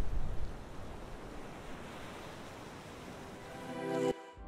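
Intro sound effect: a rushing noise, loudest in the first half-second, then settling to a steady wash. Near the end, a few held music notes swell in.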